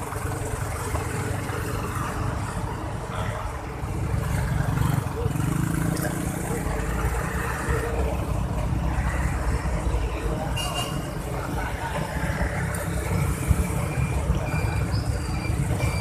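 Wind buffeting the microphone and road and engine noise from riding along a rough road among motorbike traffic. The low rumble grows louder about four seconds in.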